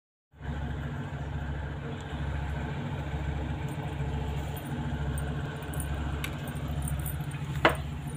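A steady low hum, swelling and easing slowly, with one sharp click near the end.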